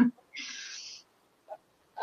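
A person's short breath drawn in: a soft hiss lasting a little over half a second, followed by a faint click about halfway through.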